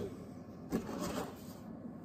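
Faint handling noise: a couple of soft rubs or rustles about a second in.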